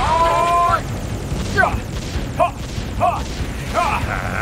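Cartoon space-battle sound effects: a held pitched tone opens, then four short cries about every second over a steady low rumble of blasts.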